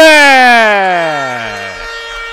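Arena end-of-period signal sounding for the end of the first quarter: a loud tone that starts high and slides steadily down in pitch over nearly two seconds. Beneath it a steady higher tone holds on a little past the glide.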